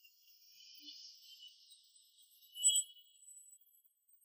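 A faint, brief ringing clink of glass about two and a half seconds in, over a faint high shimmer.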